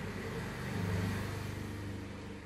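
A low engine hum that swells about a second in and then fades, like a motor vehicle passing.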